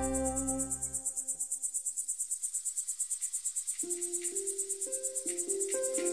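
Crickets chirping in a fast, even pulse of about nine pulses a second, over soft music: a brass phrase dies away in the first second and quiet held tones come in about four seconds in.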